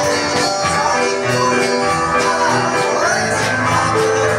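Small live rock band playing a song: a drum kit keeping a steady beat under electric guitar and keyboard.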